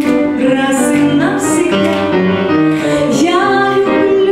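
A woman singing a ballad into a microphone with piano accompaniment, in C minor.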